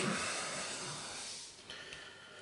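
Soft papery hiss of a small stack of trading cards being handled and set down, fading away over about a second and a half, with a faint tick near the end.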